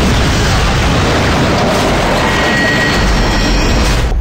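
A large explosion in film sound effects: a sudden blast right at the start, then a dense, loud rumble that carries on without a break.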